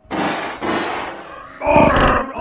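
Loud, heavily distorted edit audio: two harsh hissing bursts of noise about half a second each, then a pitched, voice-like sound starting near the end.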